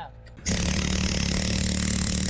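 Electric rotary hammer with a chisel bit chipping concrete out of a foundation wall around a sewer pipe opening. It starts about half a second in and then runs steadily.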